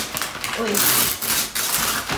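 Gift wrapping paper being torn open and pulled off a present by hand: crackly paper rustling and tearing, loudest about a second in.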